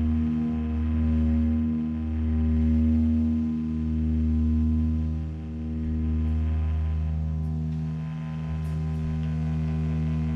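A sustained electric drone from the band's bass and guitar amplifiers. Deep held tones with a ringing overtone hang steady while the level swells and falls about every second and a half.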